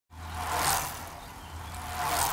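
Logo intro sound effect: a rushing noise that swells and fades twice over a steady low hum, like something passing quickly by.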